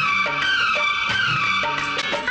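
Bollywood film-song music in an instrumental passage: a held melody line slides slowly downward in pitch across the two seconds, with no singing.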